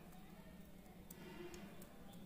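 Near silence: a faint steady hum with a few faint ticks from small plastic front-panel connector plugs being handled.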